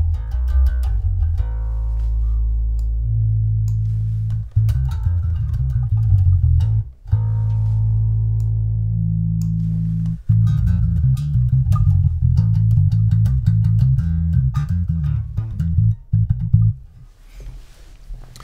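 Electric bass guitar with a Mudbucker pickup, compressed and played through a resonant low-pass filter plugin (Airwindows Holt2), giving a very deep tone with little above the lowest notes. Sustained bass notes are broken by a few short pauses, and the playing stops shortly before the end.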